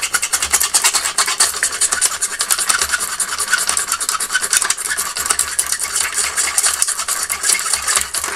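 A glass fibre pen scrubbing rapidly back and forth over metal battery contacts, a continuous fast scratchy rasp, scouring the corrosion off the contacts.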